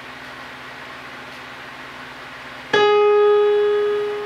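Steady faint hiss, then about two-thirds of the way in a single digital-piano note is struck and rings on, slowly fading: the opening note of a slow solo piano piece.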